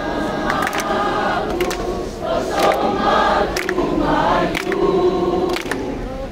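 A large crowd singing together in chorus, with a few sharp claps cutting in.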